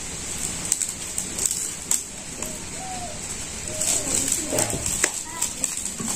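Split bamboo strips being handled, with scattered sharp clicks and knocks as the pieces are worked, over a steady high-pitched background buzz.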